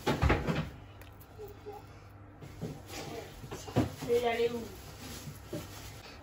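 A few knocks and clatters of kitchen handling on a countertop, one at the start and another near the four-second mark, with a brief faint voice just after it.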